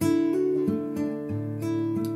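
Nylon-string classical guitar fingerpicked in a clawhammer-style pattern on a D chord. It opens with two strings plucked together, then single notes follow about three a second, ringing on over each other.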